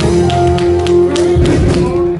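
Live band playing a worship song, with electric guitar, drum kit and keyboard. Sustained notes run under steady drum strikes.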